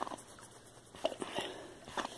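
A dog swimming with a stick in its mouth, giving a few short, sudden sounds: one at the start, two just after a second in, and one at the end.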